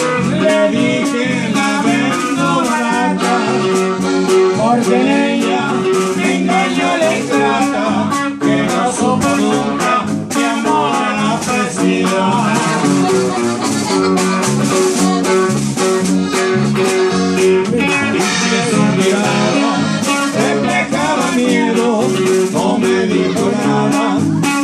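Live norteño band playing: button accordion carrying the melody over a strummed twelve-string bajo sexto, electric bass and a steady drum beat.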